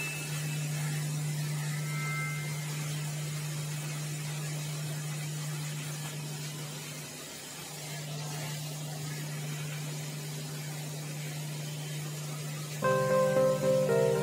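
A steady low hum over faint hiss, dipping briefly midway. Background music with several held notes comes in near the end.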